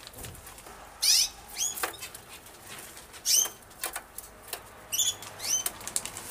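Zebra finches calling in a series of short, high chirps, the loudest about a second in. These are the worried parents calling to their chick while it is handled.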